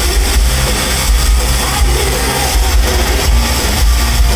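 Glam metal band playing live through a festival PA: electric guitars, bass and drums in a loud, dense, unbroken wall of sound with heavy bass.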